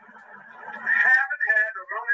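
A man speaking on an old archived audio recording, thin and muffled, quiet for about the first second and then louder.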